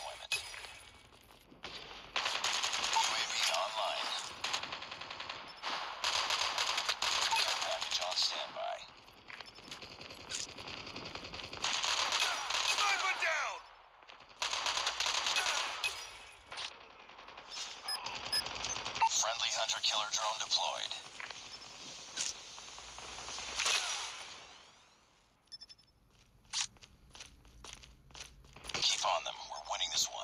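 Video-game gunfire from a mobile first-person shooter. Automatic weapons fire in stretches of a few seconds each, with short pauses between them.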